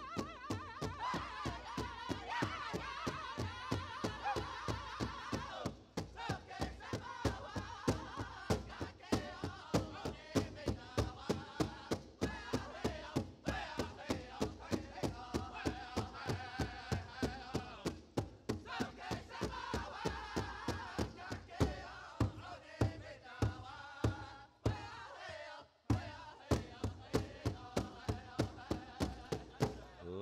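Pow wow drum group playing a song for the fancy shawl dance: a big drum struck in a fast, steady beat under group singing. The beat breaks briefly a few times, and the song stops at the very end.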